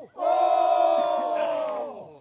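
Men's chorus from Bellona Island (Mungiki) holding one long final note together. The note sags slightly in pitch and dies away near the end.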